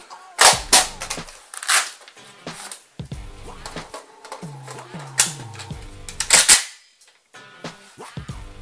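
Saiga-12 shotgun being reloaded one-handed: a series of sharp metallic clacks and clicks as a magazine is handled and seated. There are about six loud clacks, the strongest around half a second in and near six and a half seconds.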